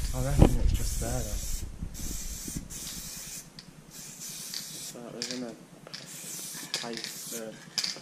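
Aerosol spray-paint can hissing in a series of short and longer bursts as a graffiti tag is sprayed onto a wall, with low voices talking.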